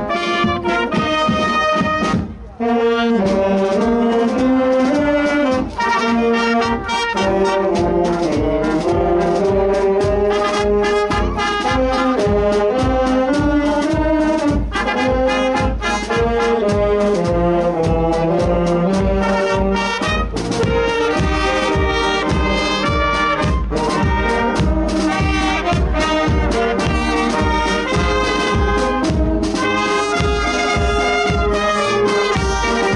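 Brass and wind band of trumpets, saxophones and flutes playing a tune over a steady low drum beat, with a brief break about two seconds in before the playing resumes.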